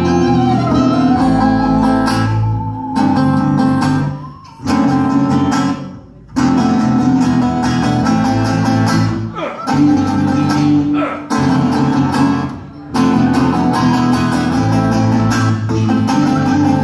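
Live acoustic guitars strumming chords in stop-start blocks that break off short several times. A bowed musical saw holds a wavering, sliding tone over the first couple of seconds.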